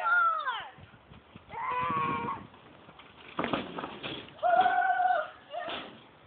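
Excited human yelling: a few drawn-out, held shouts, the first one falling in pitch, with a short clatter about three and a half seconds in.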